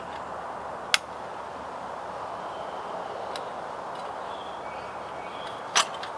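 Sharp clicks from handling a paraffin hurricane lamp while lighting it, one about a second in and a louder one near the end, over a steady background hiss.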